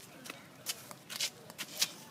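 Irregular sharp clicks and crackles over a faint hiss, about half a dozen in two seconds.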